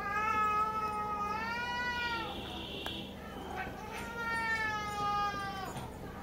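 Domestic cat giving two long, drawn-out meows, each about two seconds long, the second starting about four seconds in.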